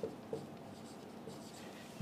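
Faint rubbing of a felt-tip marker writing on a whiteboard, with a small tap about a third of a second in.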